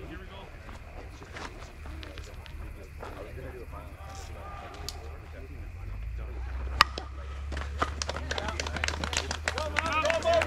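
Softball bat striking the ball with a single sharp crack about seven seconds in, followed by people shouting as the play starts; voices talk in the background before it.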